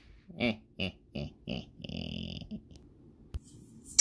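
A person chuckling: four short laugh pulses about a third of a second apart, then a longer breathy grunt, and a single sharp click a little before the end.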